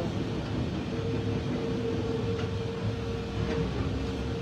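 Steady low rumble inside a moving train carriage, with a thin, steady whine from about a second in until just before the end.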